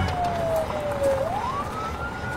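A cartoon sound effect: a single siren-like whistling tone gliding slowly down, then sweeping back up about a second in and holding high, over a faint hiss.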